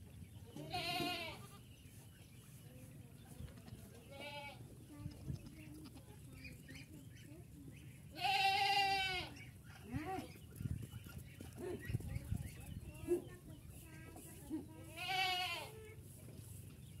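Goats bleating four times, each call with a wavering quaver. The first comes about a second in and a short, fainter one about four seconds in. The longest and loudest is about halfway through, and another comes near the end.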